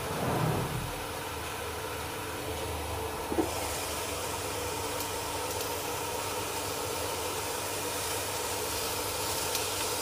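Induction cooker running with a steady fan hum and faint steady tones. A short soft knock comes about three seconds in, and just after it a hiss rises in the highs and stays up.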